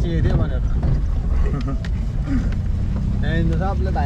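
Car cabin noise while driving: a steady low engine and road rumble, with voices briefly at the start and again near the end.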